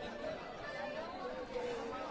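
Faint background chatter of several people talking at once, with no nearby voice.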